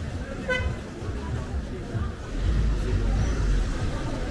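Busy street with passers-by talking, a single short car-horn toot about half a second in, and a low rumble from about two seconds in until near the end.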